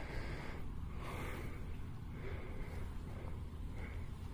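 Steady rain falling, an even hiss with a low rumble underneath.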